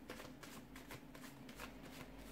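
Faint room tone: a steady low hum with soft, irregular crackles.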